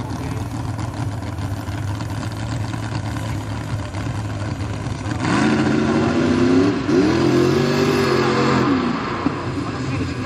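Engine of a lifted Chevrolet square-body mud truck on tractor tires, running steadily and then, about halfway through, revving up as it accelerates. The pitch drops briefly at a shift and climbs again before easing off near the end.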